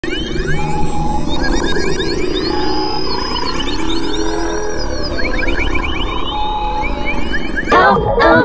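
Electronic intro music: a steady low bass drone under many quick synthesizer pitch sweeps and chirping glides, with a few short held tones. Near the end the song itself comes in louder, with singing.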